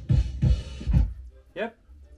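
Music with a drum beat, three heavy low beats about half a second apart, then quieter, played from a CD on a Kenwood DP-950 CD player through loudspeakers in a small room.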